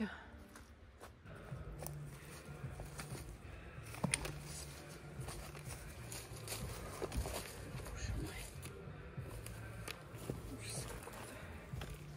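Footsteps in dry leaf litter on a forest path, with scattered crackles of twigs and light clicks of trekking poles.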